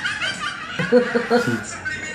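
A person chuckling: a short run of about four quick laughs about a second in.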